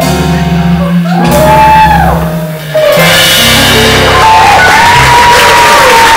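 A live band playing the closing bars of a song, with long shouted calls that rise and fall over the music. From about halfway a wash of crowd cheering and applause fills in on top.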